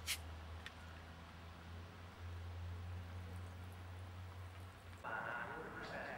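A steady low hum with a sharp click at the start, then people talking from about five seconds in.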